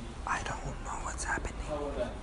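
Hushed, whispered speech over a steady low hum.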